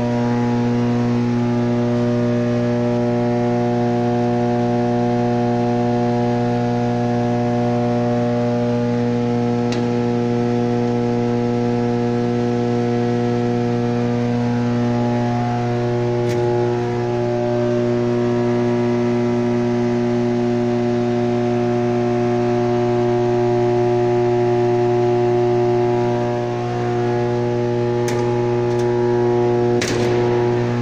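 Steady electrical hum of medium-voltage substation power equipment: a low drone with several steady higher tones above it that swell and fade slightly. A few faint clicks come near the middle and near the end.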